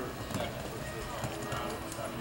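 Hoofbeats of a horse cantering on sand arena footing, with people's voices talking over them.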